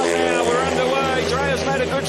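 Four 500cc single-cylinder speedway bikes revving hard at the start and accelerating away together as the race gets under way.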